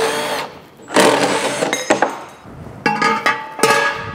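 Cordless drill-driver running in four short bursts, each under a second, as it works fasteners on a steel garden-tractor fender pan being stripped down for sandblasting.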